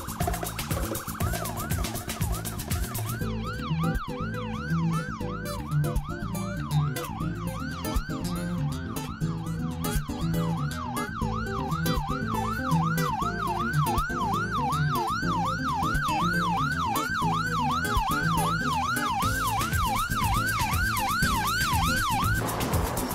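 Emergency vehicle siren in a fast rising-and-falling yelp, about two sweeps a second, starting about a second in. Music with a low beat runs underneath.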